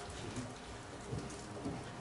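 Steady room hiss with a few faint, brief murmurs and light clicks.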